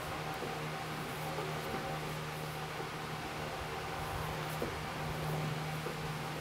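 Steady low hum and hiss of workshop room noise, with a few faint clicks.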